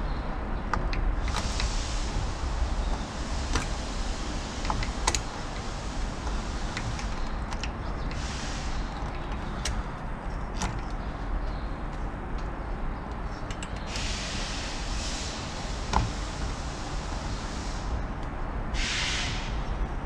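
Large steel snap ring being worked into its groove in a Chrysler 62TE transmission's input clutch drum with snap ring pliers: scattered sharp metallic clicks and scrapes over a steady low hum. The ring is a stiff fit and takes a struggle to seat.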